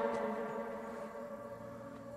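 Soft background music score: several held tones ringing on and slowly fading, with a low tone joining about a second and a half in.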